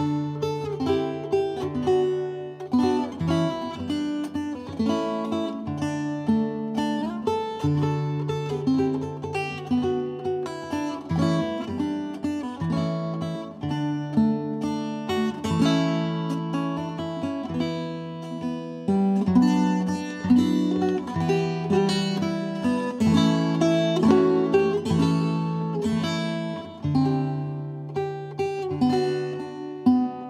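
A solo chitarra battente plays an instrumental introduction in sixteenth-century style. Its metal-strung courses are plucked, with a melody running over repeated low bass notes.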